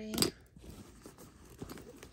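A sharp click or knock near the start, then rustling and light scraping as a hand rummages through the lined fabric pockets of a faux-leather handbag.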